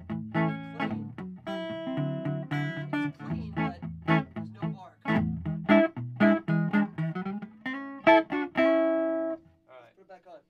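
1948 Silvertone archtop electric guitar played through a clean amp with no pedal: riffs of picked chords and single notes, with a held chord at the end that stops about nine and a half seconds in.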